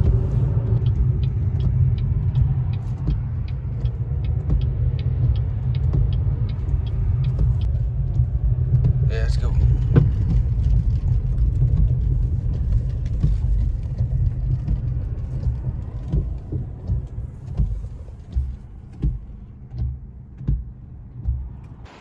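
Road noise inside a moving car: a steady low rumble of tyres and engine, with faint regular ticking about twice a second through the first half. The rumble fades and becomes uneven near the end as the car slows.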